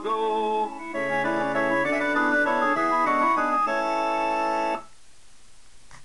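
Organ-voiced electronic keyboard playing the closing phrase of the song's accompaniment: sustained chords under a stepping melody, which stop abruptly a little before the end, leaving only a faint hiss.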